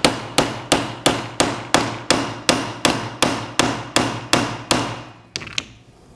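Dead blow hammer striking a stainless steel plunger, driving it down into a radial pump piston cap set on a wood block: about fourteen steady blows, roughly three a second, then two lighter taps near the end. The plunger is being seated to the bottom of the cap, which takes extra force on the wood block.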